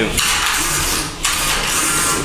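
Combat robot arena noise: a harsh, hissing rasp over a low hum, in two stretches with a short break a little past the first second.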